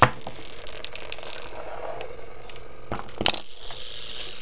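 Handling clatter on a small home-built pulse motor rig: a sharp click at the start, a few light clicks, and a cluster of knocks about three seconds in. Underneath, the running pulse motor keeps up a faint steady hum.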